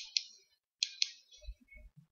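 Two pairs of quick, sharp computer clicks about three-quarters of a second apart, made while stepping back through moves in chess software. A few faint low bumps follow.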